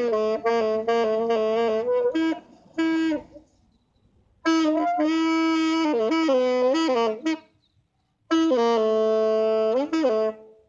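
A saxophone played solo without accompaniment: three short melodic phrases of held and moving notes, separated by pauses of about a second.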